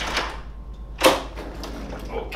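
Hotel room door latch clicking sharply about a second in as the door is unlocked and swung open, over a low steady hum.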